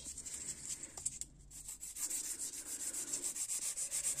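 Hand nail file stroking back and forth across the side of a long artificial nail extension. The strokes are light and uneven at first, then from about halfway become quick and regular.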